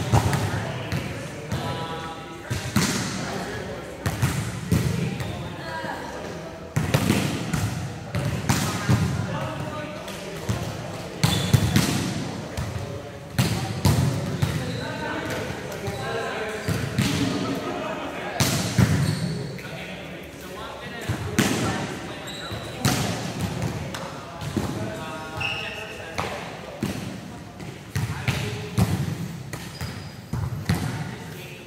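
Volleyballs being struck and bouncing in a reverberant indoor sports hall during a warm-up drill: sharp, echoing hits at an irregular pace, roughly one every second or two, with players' voices talking in between.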